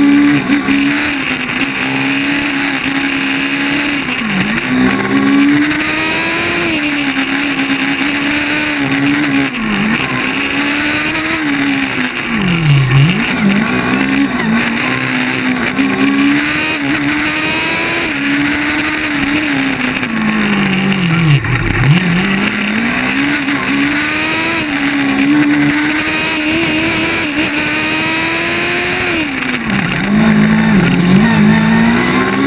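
Formula Student race car's engine heard from on board, its revs climbing under throttle and falling off again, over and over, as the car is driven through the corners of a cone course. Twice, around the middle and about two-thirds through, the revs drop deeply before building again.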